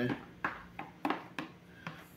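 A few light, separate clicks of a plastic spoon scraping and tapping inside a plastic jug as the last thick soap batter is scraped out into a tray.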